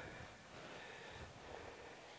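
Very quiet outdoor background: a faint, steady hiss with no distinct sound event.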